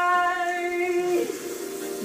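A singing voice holding one long steady note over a karaoke backing track; the note ends about a second in, leaving the quieter backing music.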